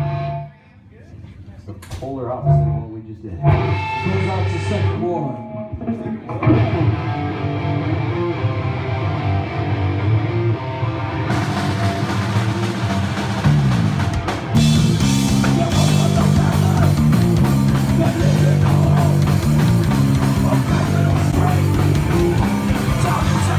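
Live hardcore punk band going into a song: a few scattered bass and guitar notes at first, then bass and guitar start playing about six seconds in, cymbals join near the middle, and the full band with drums comes in loud about two-thirds of the way through.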